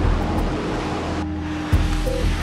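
Background music over a steady rushing noise, with a low thump near the end.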